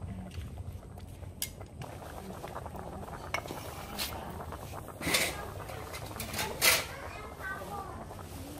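A metal ladle clinking and knocking against an aluminium cooking pot a few times while a fish soup is stirred, the loudest knocks coming about five and six and a half seconds in.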